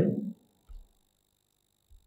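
A man's word trailing off, then a pause of near silence in a small room, broken by one faint, short, low thump.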